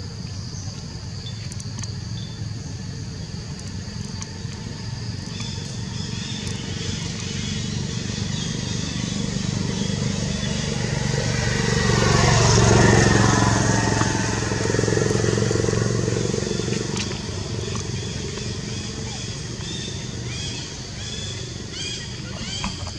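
A motor vehicle passing: a low engine sound that grows louder to a peak about halfway through, then fades away. Faint high chirping is heard near the start and again near the end.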